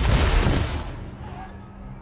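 Battle sound effects from a TV drama's fight scene: a sudden deep boom and crash that fades away over about a second, leaving a low drone of the score.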